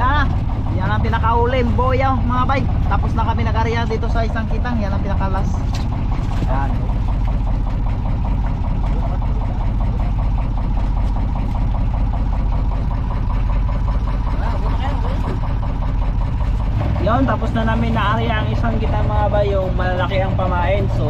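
Outrigger fishing boat's engine running steadily at low speed, a constant low drone. Voices talk over it in the first few seconds and again near the end.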